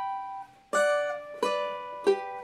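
Cavaquinho chords strummed and left to ring: one fades out, then two more are struck about two-thirds of a second apart.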